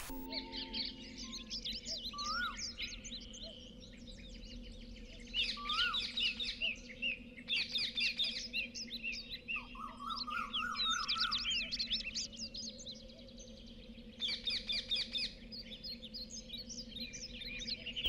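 Small birds chirping and twittering in busy clusters of quick, rapidly sweeping high notes that come and go, over a faint steady low hum.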